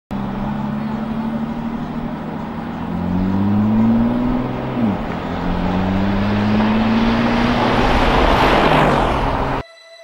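Twin-turbo V8 SUVs accelerating hard in a drag race. The engine drones steadily for about three seconds, then rises in pitch, dips sharply at a gearshift a little before five seconds in, and climbs again, growing louder as they come close. The sound cuts off abruptly just before the end.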